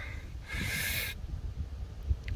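A man's breath, exhaled close to the microphone, lasting about half a second. It comes over a steady low rumble of wind on the microphone.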